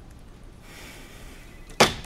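Corded desk phone handset being hung up: a brief rustling swish, then one sharp clack as it lands in the cradle near the end.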